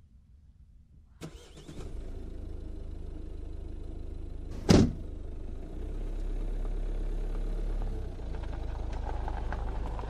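A Maruti Suzuki Swift Dzire's engine starts about a second in and then runs steadily. A car door shuts with one loud thump near the middle. After that the engine drone grows deeper and stronger as the car pulls away.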